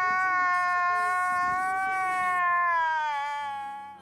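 A single long, drawn-out cry held at one steady pitch for several seconds, then sliding down in pitch and fading out near the end.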